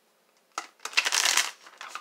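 A deck of tarot cards being shuffled in one quick flurry of rapid card snaps. It starts about half a second in and lasts about a second, followed by a few softer card clicks.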